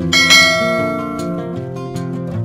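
A bright bell chime rings once just after the start and fades over about a second, the notification-bell sound effect of an animated subscribe button, over background music.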